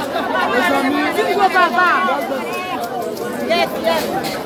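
A dense crowd of many voices talking and calling out over one another.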